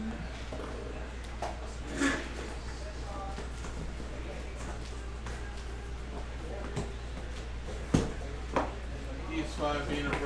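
Cardboard boxes being handled and set down: a few scattered knocks and bumps, the loudest about eight seconds in, over a steady low hum.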